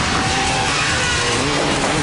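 Cartoon motorcycle engine sound effects for a pack of robot cycle drones riding together, engine pitches rising and falling over a dense, steady roar.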